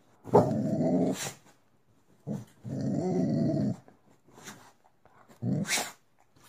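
Dog growling: two growls of about a second each, then a shorter one near the end.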